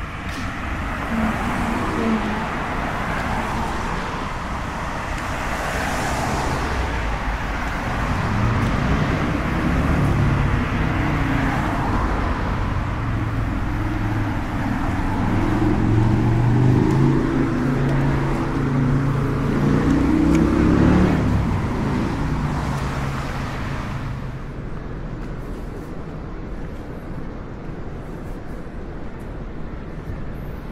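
Road traffic passing on a city street. A heavier vehicle's engine builds through the middle, is loudest about two-thirds of the way in, then fades. The last few seconds are quieter.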